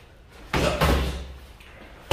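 Boxing-glove punches landing during sparring: two quick thuds, about half a second and just under a second in, each trailing off briefly.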